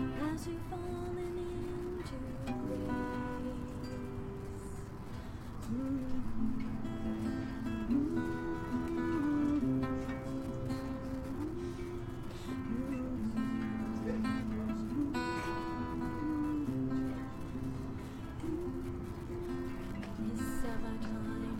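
Acoustic guitar playing a melodic instrumental passage between verses of a song.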